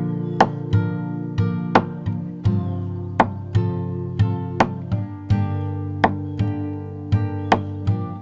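Nylon-string acoustic guitar played in a percussive strumming pattern: strummed chords alternating with thumb slaps on the strings, about three sharp hits a second, the chords ringing on between them. The pattern runs strings, thumb, strings, strings, thumb.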